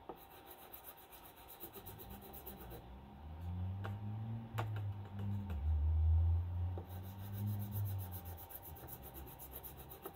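Wet chalk stick rubbed and scrubbed over paper on a wooden table, a soft scratchy rasp. A low hum swells in the middle and fades again, with a couple of small clicks.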